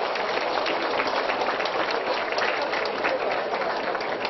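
Applause from a small group of people clapping steadily.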